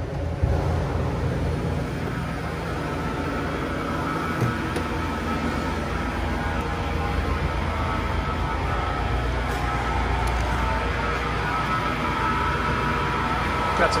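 Walk-in cooler's refrigeration equipment running: a steady mechanical hum with a faint whine coming in during the second half, a running sound the technician calls terrible.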